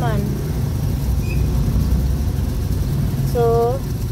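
Steady low engine and road rumble inside the cabin of a moving vehicle, with a short held voiced "mm" near the end.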